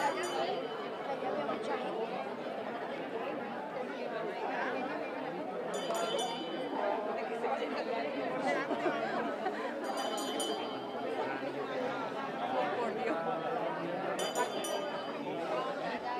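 Crowd of spectators talking among themselves, a steady murmur of many voices. A few brief, high metallic jingles come through it every few seconds.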